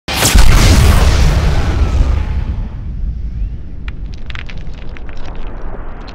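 Intro title sound effect: a loud, deep boom just after the start that rumbles and fades away over a few seconds. Sharp crackles like fire sparks come in the second half.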